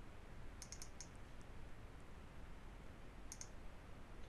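Faint computer mouse clicks over a low steady hiss: a quick run of about four clicks about half a second in, then a double click near the end.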